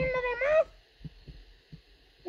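A person's high, nasal put-on voice drawing out one wavering, whining cry that rises in pitch at its end, followed by a few faint soft thumps.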